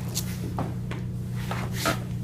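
Steady low room hum with a few soft knocks and rustles, the loudest just before the end.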